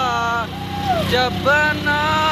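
A high-pitched voice singing sliding, drawn-out notes, over a steady low hum.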